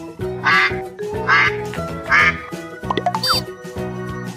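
A duck quacking three times, about a second apart, over light background music. A brief effect of gliding high tones follows near the end.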